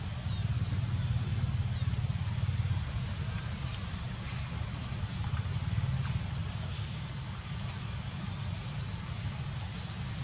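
Outdoor background noise: a steady, fluttering low rumble, louder in the first few seconds, with a faint steady high hiss above it. No clear monkey calls are heard.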